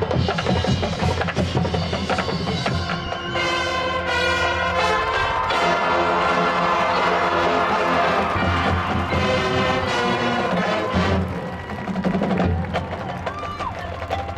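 High school marching band playing: brass chords over drums and percussion, building to a loud held chord in the middle, then thinning out near the end with the percussion more to the fore.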